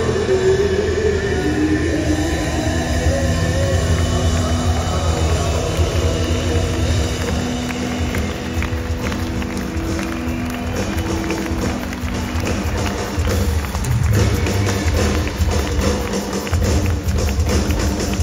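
Heavy metal band playing loudly through a concert PA, heard from the crowd. Held guitar and keyboard notes ring through the first half, and the drums come in heavier in the second half.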